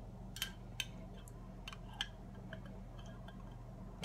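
Metal spoon clinking and scraping against a glass jar while scooping out jam: a few faint, sharp clicks over a low steady hum.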